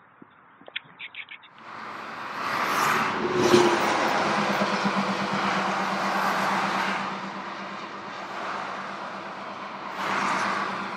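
Multi-lane highway traffic heard from an overpass above it: a steady rush of cars and trucks passing, coming in about two seconds in and loudest around three and a half seconds, with a truck engine's low hum under it.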